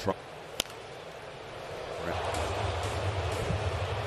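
Ballpark crowd noise with one sharp knock of the pitched ball about half a second in. The crowd murmur swells about halfway through.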